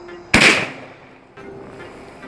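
A single loud gunshot, a sharp crack with a short fading tail, about a third of a second in, over background music.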